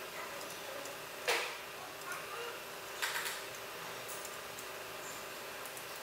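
A wrench clinking against metal while the starter motor cable bracket is fitted and tightened under the car: one sharp clink about a second in and a short cluster of smaller clicks around three seconds, over a steady workshop hum.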